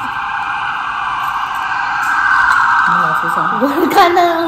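A steady rushing noise, with a person's voice coming in about three seconds in.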